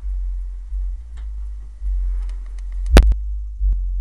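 A car audio system's two DB Drive Platinum series 15-inch subwoofers, on an Audiobahn 3,000-watt amp, playing deep bass notes in long pulses inside the car. A sharp knock comes about three seconds in.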